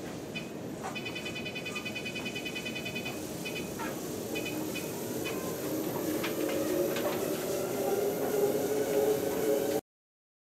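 Motorized treadmill starting up: the console beeps as its buttons are pressed, with a quick run of beeps after about a second, then the motor and belt hum, growing louder as the belt comes up to walking speed. The sound cuts off suddenly just before the end.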